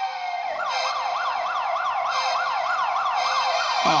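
Emergency-vehicle siren in a yelp pattern: a fast, repeating rising wail of about three sweeps a second, over a steady held synth tone. It starts about half a second in, after a falling glide.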